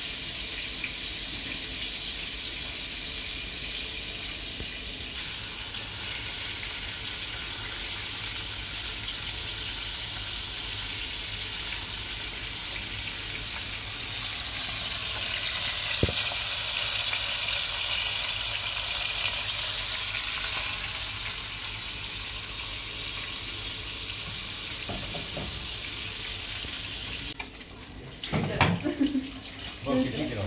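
Steady kitchen hiss of a running tap and food frying in oil in a pan. The sizzle swells for several seconds in the middle, with a single knock of the spatula about halfway through.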